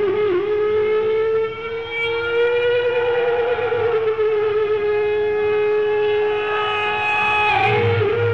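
Electric guitar holding one long sustained note that wavers with vibrato at first, then slides slowly in pitch and holds, over a rock band. The sound is a lo-fi live concert audience recording.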